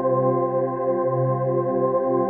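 Ambient meditation music: a steady drone of held tones forming one sustained chord, with no beat and no change in level.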